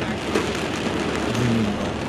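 Steady rain falling on a car's roof and windows, heard from inside the cabin.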